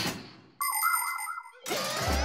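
A cartoon sound-effect stinger: a bright, wavering, boing-like chime lasting about a second, with background music coming in near the end.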